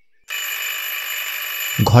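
Call bell ringing continuously for about a second and a half, rung to summon a servant.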